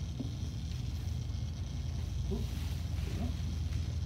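Steady low rumble with a faint hiss over it: the simulated MIG-welding sizzle from a Lincoln Electric welding simulator's speakers as the torch is held to the practice plate.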